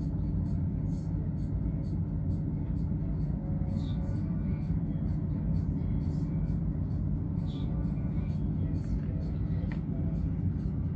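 Steady low rumble of a cruise ship under way, heard from its open deck, with faint voices in the background.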